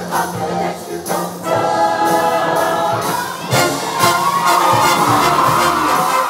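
Show choir singing an up-tempo number in harmony over instrumental backing with a drum beat, growing louder partway through and holding a long high chord near the end.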